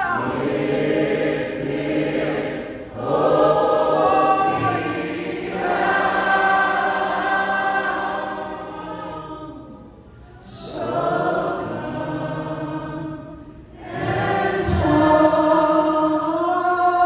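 Live gospel worship singing: a woman's lead voice with backing singers in long, held phrases that swell and fall, thinning out briefly about ten seconds in and again near fourteen seconds.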